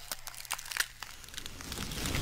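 Scattered crackling clicks, then a hiss that swells toward the end: the start of the channel's intro sound effects.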